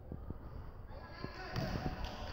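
A basketball bounced a few times on a hardwood gym floor as a player dribbles at the free-throw line before shooting, with people talking in the background.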